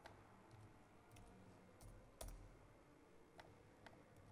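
Near silence broken by about five faint, sharp clicks from a computer's mouse or keyboard being worked, the loudest a little past halfway with a dull low knock under it.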